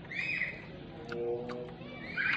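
A short high-pitched animal call right at the start, then a low closed-mouth 'hmm' hum from a man chewing food, lasting under a second.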